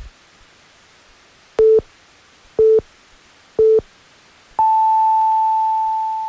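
Radio hourly time signal: three short low beeps one second apart, then a long beep an octave higher that marks the top of the hour and slowly fades.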